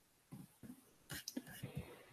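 Faint, indistinct speech, too quiet for words to be made out, in short broken stretches.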